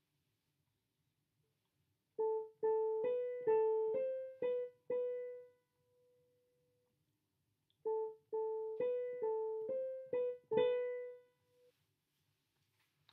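Keyboard playing the same short melody twice, first plain and then with an appoggiatura, a note that leans onto the main note. Each phrase is a run of about seven or eight short notes ending on a longer held note, with a pause of about two seconds between the phrases.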